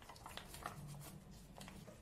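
Faint crinkling and soft ticks of a plastic tomato-sauce sachet being squeezed out by hand, with the thick sauce dropping into a glass baking dish.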